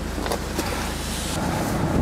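Steady road and engine noise of a car driving at speed, heard from inside the cabin; the low rumble thins and a hiss comes up about a second and a half in.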